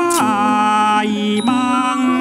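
Thai classical singing for a lakhon dance drama: one voice holding long, drawn-out notes. It slides down into a low held note just after the start and rises into another about one and a half seconds in.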